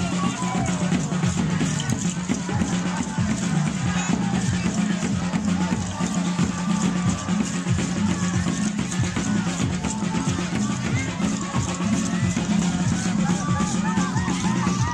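Music with a steady drum beat and a wavering melodic voice.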